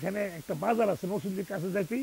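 A man speaking Bengali in short, quick phrases with brief breaks between them.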